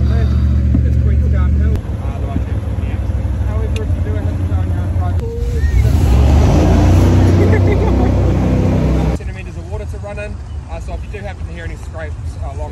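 Jet boat running at speed: a loud, steady low engine drone under a rush of wind and water that swells in the middle and drops away suddenly about nine seconds in.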